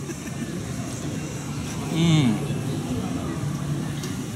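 Street traffic noise in the background, steady throughout, with a brief voice sound about two seconds in.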